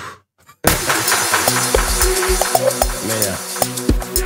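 An amapiano beat playing back from FL Studio, starting suddenly under a second in: a dense, crackling, hissy texture over sustained synth pad tones. Deep drum hits come in about a second later.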